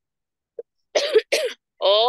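A woman coughing twice in quick succession about a second in, heard over a video call.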